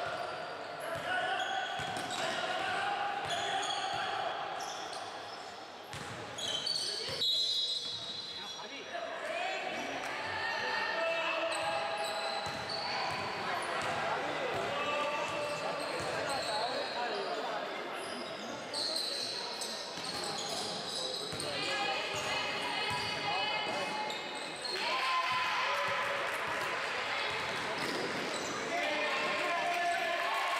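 Basketball being dribbled and bounced on an indoor court during play, with players' footsteps and indistinct voices calling out in the hall.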